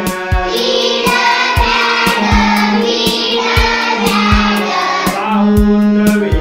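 A class of children singing a rhyme in unison over instrumental accompaniment with a steady beat of about two strokes a second.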